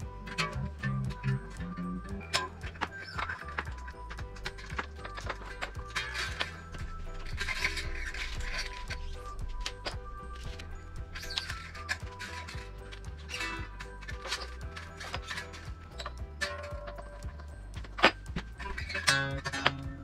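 Background music with a steady bass pattern, over short clicks and scrapes of a new steel string being handled and wound onto an electric guitar's tuning machine, with a quick run of clicks near the end.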